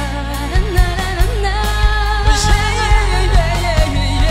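Live pop band playing a slow song while a man and a woman sing a duet in the Chin language, with electric guitar, keyboard, bass and a steady drum beat.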